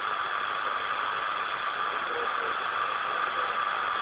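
Steady hiss of band noise from a Lincoln transceiver's speaker, receiving 27.660 MHz on upper sideband with no station transmitting.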